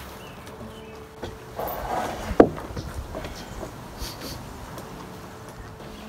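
Scuffing and knocking as the heavy timber beam and gate frame are handled, with one sharp wooden knock a little over two seconds in.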